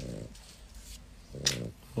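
Two short breathing sounds from a resting French bulldog, about a second and a half apart.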